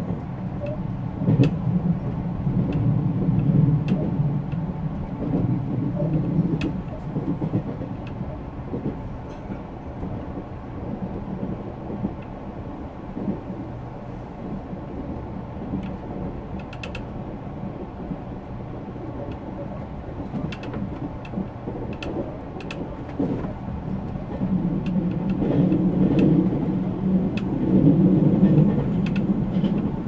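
JR Central Series 383 tilting electric train running along the line, heard from inside its front cab: a steady rumble of wheels on rail that grows louder for a few seconds near the start and again near the end, with scattered sharp clicks.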